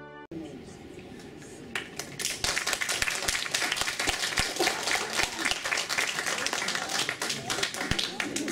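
A song's playback cuts off abruptly a moment in. From about two seconds in, an audience applauds, with a dense, irregular clatter of many hands clapping.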